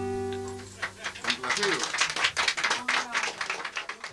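A Cuban son ensemble of tres, guitar and bass ends on a final chord that rings and fades away over about the first second. Scattered handclaps and voices follow.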